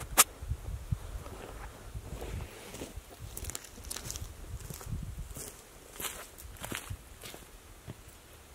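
Footsteps over ground strewn with dry leaves, twigs and bark, as a person walks across the frame and stops beside the wooden floor platform. A sharp click comes just after the start, and irregular soft scuffs follow.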